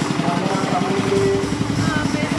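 Small portable generator engine running steadily close by with a fast, even pulse, with people's voices over it.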